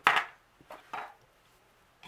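Metal tweezers set down on a hard tabletop with a sharp clatter, followed by two lighter knocks of small objects handled on the table about a second later.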